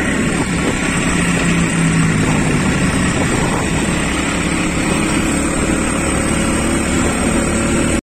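Motorcycle engine of a bentor (motorcycle-pushed pedicab) running under way, mixed with road and wind noise: a loud, steady drone.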